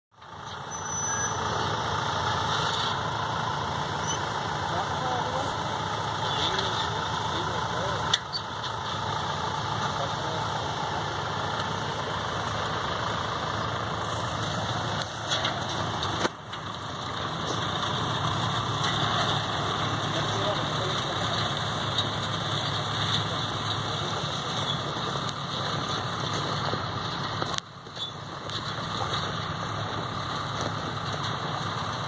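Tractor engine running steadily as it pulls a John Deere 450 grain drill through tilled soil, with a few brief drops in the sound.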